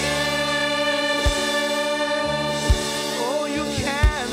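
Live gospel worship music: a group of singers and keyboard hold one long chord, with a few soft drum beats under it, and the voices bend into the next line near the end.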